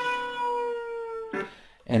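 Electric guitar sustaining a whole-step bend on the second string at the tenth fret, one long note that is slowly let down in pitch. It stops about a second and a half in with a short scrape of string noise.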